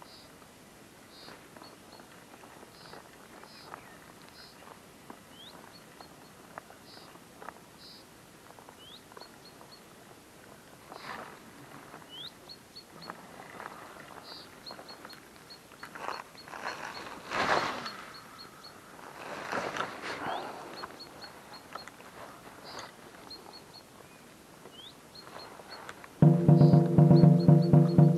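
Footsteps crunching and clattering over loose, flat stones on a shore, loudest in a cluster a little past the middle, while a bird chirps over and over in short, high calls. Loud music begins suddenly near the end.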